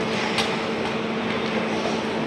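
Steady outdoor background noise with a faint, even hum running through it; no distinct events stand out.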